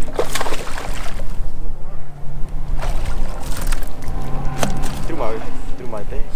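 A bass boat's electric trolling motor giving a steady low hum that cuts off about three seconds in, comes back a second later and stops again shortly after. Low wind rumble on the microphone and a few sharp clicks run through it.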